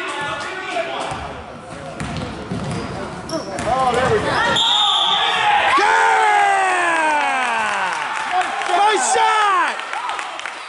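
Basketball sneakers squeaking on a hardwood gym floor: many quick, falling squeals that start about four seconds in and run until just before the end, as players scramble for the ball. A basketball bounces, and thuds of play come earlier.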